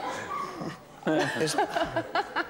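A person's high-pitched, yelping laughter, starting about a second in after a short lull.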